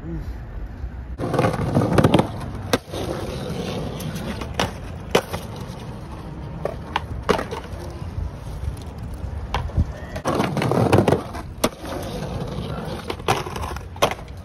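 Skateboard wheels rolling over rough concrete, with a few louder stretches of rumble and several sharp clacks of the board hitting the ground.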